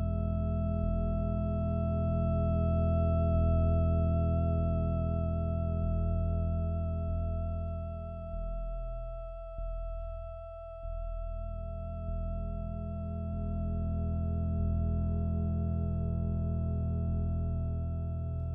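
Theremin holding one long note with a slight vibrato over a low, pulsing electronic drone; the low part drops away briefly about halfway through.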